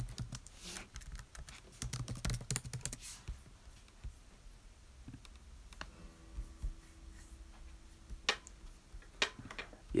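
Typing on a computer keyboard: a quick run of key clicks in the first three seconds, then a few scattered taps.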